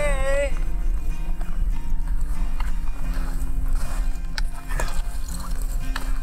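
People hiking uphill through snow with ski poles: footsteps and a few sharp pole clicks over a steady low rumble. The last sung note of a song dies away about half a second in.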